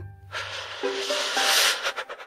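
Cartoon sound effect: a hissing, swishing noise about a second and a half long, fading out near the end.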